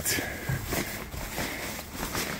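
A cloth cover being pulled aside by hand, rustling, with a few soft handling knocks.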